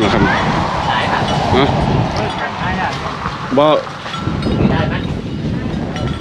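A man laughs briefly about three and a half seconds in, with scattered voices, over a loud, steady rushing background noise.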